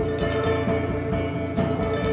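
A rock band playing live, with electric guitar over a drum kit and a cymbal crash near the end.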